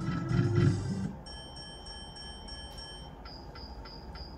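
Book of Ra Classic slot machine: a low electronic tune with reel-stop clicks as the reels come to rest, then a quick run of high electronic beeps, about four a second, as the line win is counted up.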